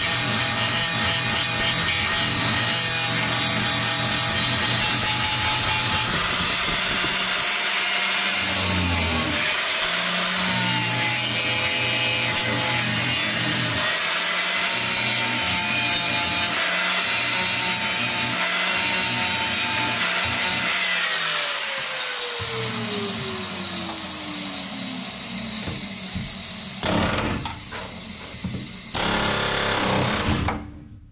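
Angle grinder with an abrasive disc grinding the heads off solid buck rivets in a bus's steel framing. The motor's whine wavers in pitch under the harsh grinding noise as the disc is rocked against the metal. About three-quarters of the way through, the whine falls as the disc spins down, and two short bursts of sound come near the end.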